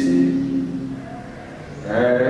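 A man singing a slow, unaccompanied worship song: a held note fades out over the first second, there is a short gap for breath, and the next phrase begins near the end.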